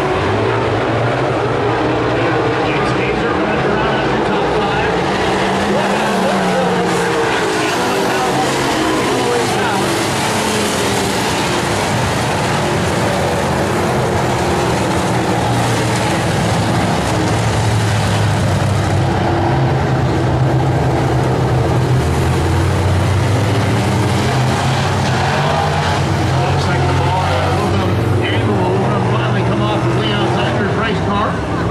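Dirt super late model race cars' V8 engines running at racing speed around the track, a loud, steady drone of the field, with deeper engine tones coming up in the second half.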